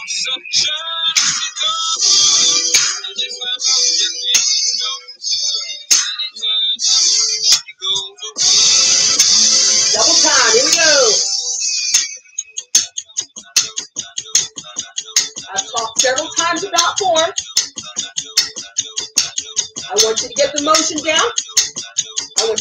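Workout music playing, with a singer over a steady beat. About nine seconds in there is a dense swell with falling sweeps, after which the beat runs on sparser and sharper.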